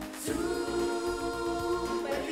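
Theme music: a choir of voices sings one long held chord over instrumental backing, which comes in with a bright crash just after the start.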